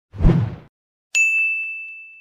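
Logo-intro sound effect: a short low rush of noise, then about a second in a single bright ding that rings on one high note and slowly fades.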